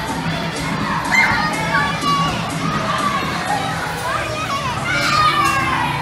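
Many children shouting and squealing in a continuous crowd din, with louder shrieks about a second in and again near the end.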